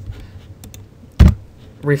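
Computer keyboard keystrokes: a few faint taps, then one sharp, loud key strike about a second in.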